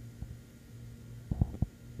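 A steady low hum, with a few soft low thumps about a second and a half in.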